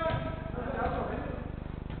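Players' voices calling out during an indoor football game in a large sports hall, with a short shout around the start, over a steady low hum.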